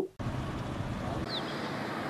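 Steady outdoor background noise, a low rumble with hiss, from the field footage's own sound. One brief high, falling chirp comes a little past the middle.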